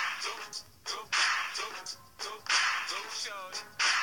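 Meme remix track: a loud, noisy whip-like crack repeats in a loop about every second and a third, with brief voice snippets between the cracks.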